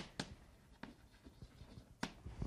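Chalk writing on a blackboard: a handful of sharp, irregular taps as strokes begin, with faint scratching between them.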